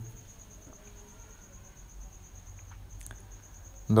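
Faint background in a pause of speech: a steady, high-pitched pulsing trill, with a single faint click about three seconds in.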